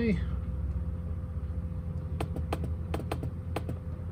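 About eight quick, sharp clicks of computer keys and mouse buttons, bunched together in the second half, as a charge-voltage value is entered in charge-controller software. A steady low hum runs underneath.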